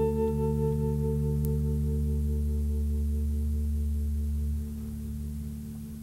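Final chord of a rock band ringing out on electric guitars and bass guitar, several steady notes slowly fading. The low bass note drops away near the end, leaving the chord to die down.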